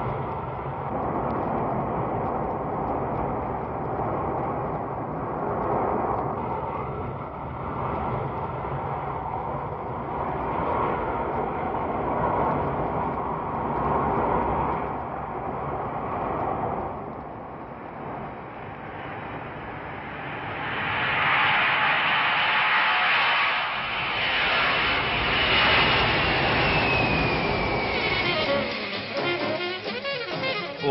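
Boeing 747 Pratt & Whitney JT9D turbofans heard from the cabin with two engines on one side shut down, a steady rushing noise. About two-thirds of the way in it grows louder with a high whine that falls in pitch near the end.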